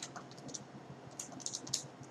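Keys being tapped: light, quick clicks in short runs, a few at the start and a faster run in the second half, as figures are keyed in to add them up.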